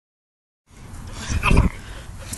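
A toddler's brief fussy whimper about a second and a half in, over outdoor background hiss, with a low rumble on the microphone under it.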